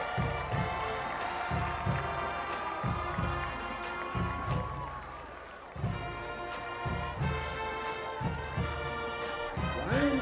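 High school marching band playing: sustained brass chords over a steady low drum beat about twice a second, easing off toward the middle and coming back in strongly about six seconds in.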